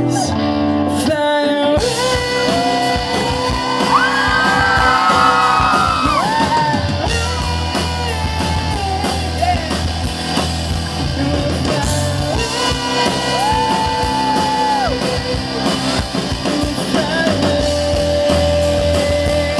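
Live pop-rock band playing in a large hall, with guitar; the full band comes in about two seconds in, under long held sung notes.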